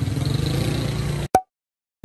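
Low rumbling street noise, then a sharp click about a second and a quarter in, after which the sound cuts to dead silence at an edit.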